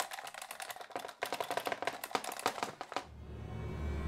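A push button being mashed over and over: a fast stream of sharp clicks, about ten a second, for about three seconds. A low hum comes in near the end.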